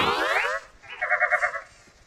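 A cartoon voice's laugh tails off at the start. About a second in comes a short, rapidly wobbling cartoon sound effect that lasts about half a second.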